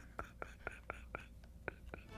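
Faint, breathy stifled laughter: a quick train of short puffs of breath, about four a second, with a brief pause past the middle.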